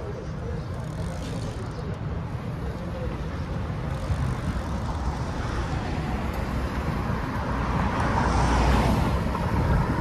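City street traffic noise: a steady hum of road noise that swells as a car passes about eight to nine seconds in.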